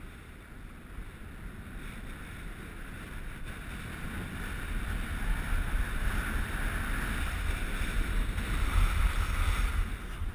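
Wind rushing over a moving camera's microphone with the hiss of skis sliding on packed snow, growing steadily louder as speed picks up.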